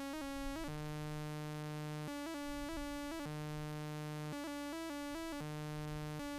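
Doepfer Eurorack modular synthesizer oscillator playing a continuous, semi-random quantized sequence: one bright tone stepping between pitches without gaps, some notes held about a second, others changing several times a second. The pitch comes from two mixed LFOs through a quantizer, and the long held note is the oscillator's base tuning, heard when both LFOs dip below zero.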